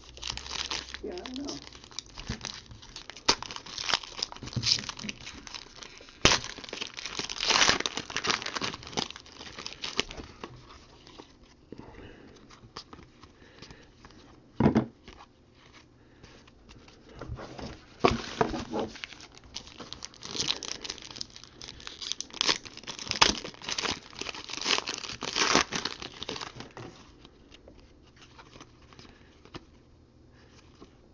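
A foil wrapper of a baseball card pack being torn open and crinkled in the hands, then the cards rustled and shuffled through, in irregular bursts of crinkling with a few sharp clicks.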